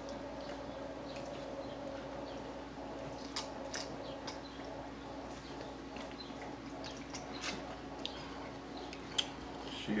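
Close-up eating and drinking sounds: a few short, sharp mouth and cup clicks as ginger ale is sipped from a foam cup, over a steady low hum.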